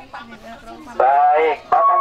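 Children's voices chattering softly, then about a second in a loud, drawn-out call in an adult voice, with pitch rising and falling, followed straight away by loud speech.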